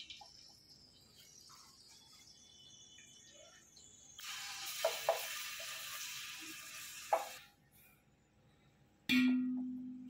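A wooden spatula scrapes and knocks in an aluminium cooking pot, with a few seconds of hiss in the middle. Near the end comes a sharp metallic clang that rings on for about a second.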